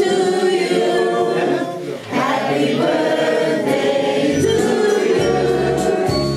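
A group of voices singing together in chorus, with a short dip about two seconds in.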